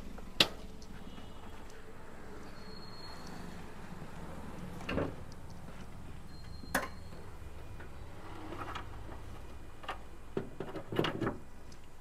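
A sharp knock about half a second in, the loudest sound, then a few scattered clicks and a dull thud over a low steady hum. This is the 2011 Toyota Etios Liva's door and bonnet latch being worked as its bonnet is released and raised.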